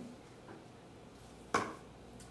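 A faint tick about half a second in, then a single sharp knock about a second and a half in that dies away quickly.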